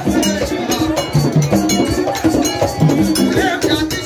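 Haitian Vodou ceremonial music: hand drums and a struck metal bell keep up fast, dense strokes under group singing.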